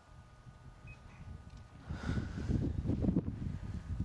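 Wind buffeting the camera's built-in microphone as an irregular low rumble, gusting much louder from about two seconds in.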